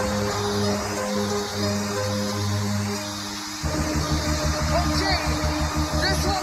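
Makina dance music from a DJ set: held synth notes over a bassline, then a fast, pounding beat drops in a little past halfway.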